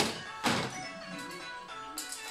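Background music with steady notes, and about half a second in a brief clatter of plastic LEGO pieces being handled and set down.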